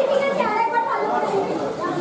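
Speech only: people talking, with chatter in the background.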